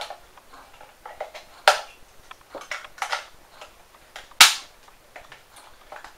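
A few sharp plastic clicks and knocks from handling a handheld DT-1130 EMF meter and its 9-volt battery. The loudest knock comes about four and a half seconds in.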